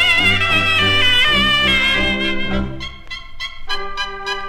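A cobla band playing a sardana: a high melody with a wavering vibrato over a pulsing low brass accompaniment. The music quietens briefly about three seconds in, then a new phrase starts with short detached notes.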